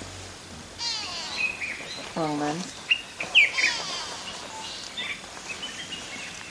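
Wild birds calling: short high whistled notes and two quick falling trills, about a second in and again after three and a half seconds.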